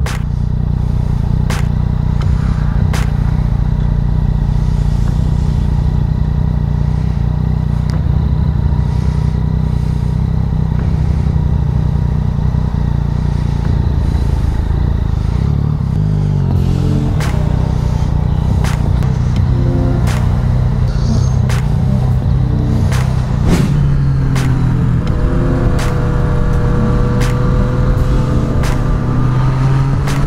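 Yamaha MT-09 Tracer's three-cylinder engine idling and pulling away at walking pace, with occasional sharp clicks. Higher pitched sounds come and go in the second half.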